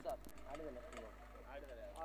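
Faint, distant voices from the ground over a low steady hum: quiet background between the commentator's lines.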